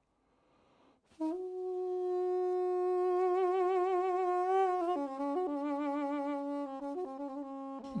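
Armenian duduk, the apricot-wood double-reed pipe, playing a slow solo melody that comes in about a second in. It holds a long note with vibrato, steps down to a lower held note about halfway through, and adds brief ornamental turns.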